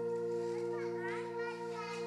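A soft keyboard chord is held steadily. About half a second in, a high voice calls out briefly over it, twice.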